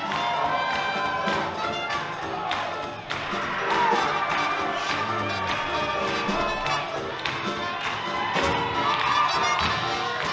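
Live big band playing up-tempo swing music with a steady beat, with the crowd cheering and shouting over it.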